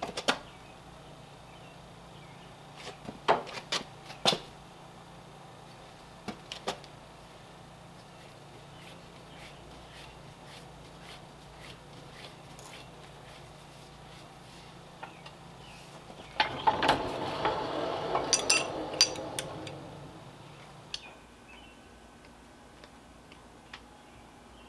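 Sharp metallic clanks and knocks of a steel strip and tooling being set in a shop press with a press brake attachment, over a low steady hum. About two-thirds of the way through comes a louder rattling, scraping stretch of a few seconds with sharp metal ticks in it.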